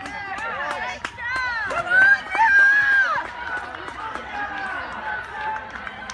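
Spectators shouting and cheering on runners coming in to the finish, several voices overlapping, with a loud drawn-out shout about two to three seconds in.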